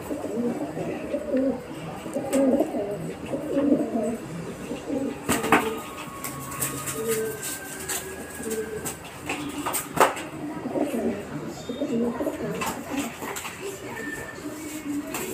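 Feral rock pigeons cooing in low, throaty calls while they fight, with wing flapping and sharp wing slaps. The loudest slaps come about five and a half seconds in and at about ten seconds.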